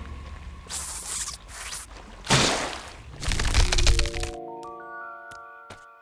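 Cartoon soundtrack: a few loud, noisy crack-and-crash sound effects over the first four seconds. Then a music cue whose sustained notes come in one after another and stack into a held chord, with a few sharp clicks near the end.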